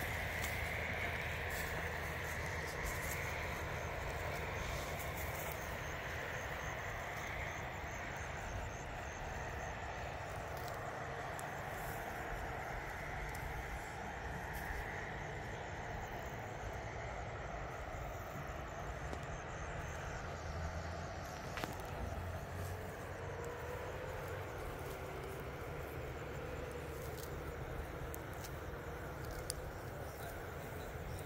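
Steady outdoor background in an open field: a constant low rumble with a faint higher hiss over it, and a couple of faint clicks in the second half.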